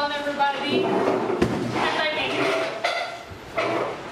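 A young woman speaking, with a single sharp thump about a second and a half in.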